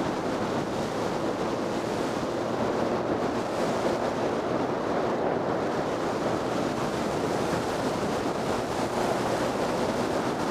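Steady rush of wind on the microphone of a motorcycle riding at road speed, with the motorcycle's engine faint beneath it.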